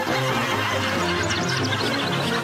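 Background music with a horse whinnying about a second in.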